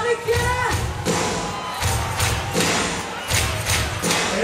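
A live band plays the introduction of a carnival song, with a heavy low beat about every three-quarters of a second under a pitched melody.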